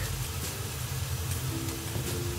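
Minced meat and onion filling sizzling steadily in a frying pan, over a low steady hum.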